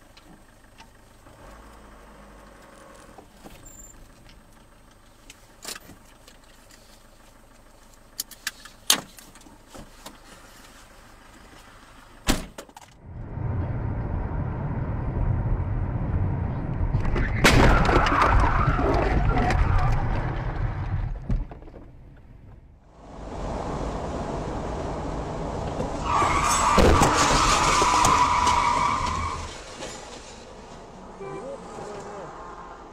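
Dashcam audio of cars on the road. The first twelve seconds or so are fairly quiet with a few sharp clicks, then loud road noise follows, with a sharp bang a little past halfway and a loud high-pitched stretch near the end.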